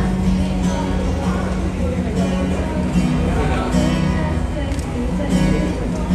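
Amplified acoustic guitar strumming a pop-song accompaniment live, with held notes that break and restart every second or so.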